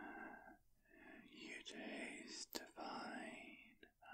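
Close-miked man's breathing and mouth sounds in ASMR vampire feeding: a few airy breaths with brief pauses, and a sharp wet mouth click about two and a half seconds in. The sounds act out drinking blood from the listener's neck.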